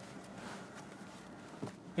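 Dacia Spring's electric power-steering servo motor whining faintly as the steering wheel is turned, swelling a little in the first second. The audible servo is a telltale sign of a very cheap car.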